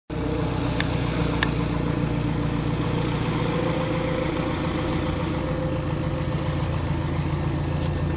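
A steady, low engine hum with a faint held tone above it, and a regular pattern of short, high-pitched chirps coming in quick pairs, about two to three a second.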